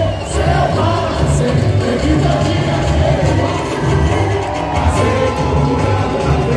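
Live samba-enredo from a samba school's drum section, deep surdo drums keeping a steady beat, with a lead singer and crowd voices singing the parade samba.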